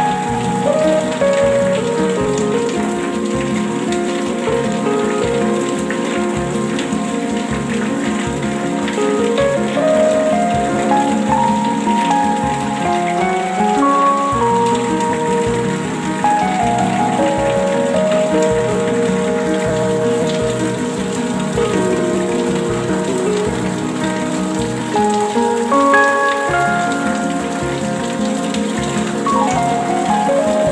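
Steady rain falling, with a slow, soft melody of long held notes layered over it.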